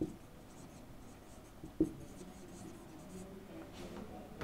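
Marker pen writing on a whiteboard: faint, short scratchy strokes, with one sharp light knock just under two seconds in.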